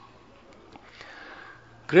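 A pause in a man's speech: he draws a soft breath into the microphone about a second in, then starts talking again near the end.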